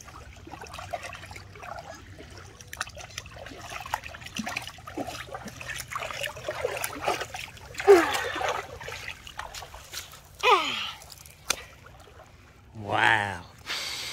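Shallow water splashing and sloshing in small irregular strokes as a hand pushes a wet stuffed toy through it, with a few short vocal sounds over it.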